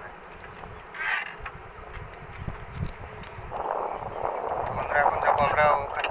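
Wind buffeting the microphone throughout, with a man's voice in the second half.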